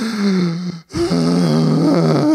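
A man's drawn-out, breathy vocal groan, acting out an exasperated sigh. It breaks off briefly with a quick breath about a second in, then starts again and holds on.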